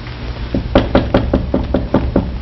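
Rapid knocking on a wooden door: about eight quick, evenly spaced raps in a second and a half, starting about half a second in.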